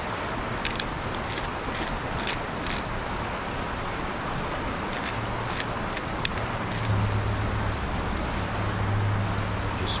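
Campfire burning with a steady rushing background and scattered sharp crackles, in two clusters in the first and middle parts; a low steady hum grows louder in the last three seconds.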